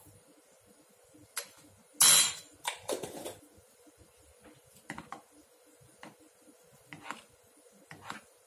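Metal cutlery clattering on a measuring cup and board: a single loud scrape-clatter about two seconds in, as the sugar spoon is set down, then sparse light clicks of a thin metal utensil stirring sugar into barbecue sauce in the cup.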